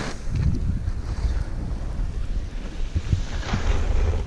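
Wind buffeting the microphone of a skier's camera during a run, a heavy gusting rumble, with the hiss of skis scraping across packed snow in a turn about three and a half seconds in.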